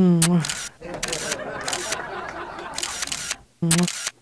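A camera shutter sound effect clicks several times in quick short bursts, like a phone camera snapping selfies. A man's pouting 'mm' comes at the start and again briefly near the end.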